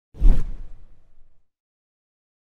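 A single whoosh transition sound effect: it starts suddenly, sweeps down in pitch with a heavy low end, and fades out within about a second.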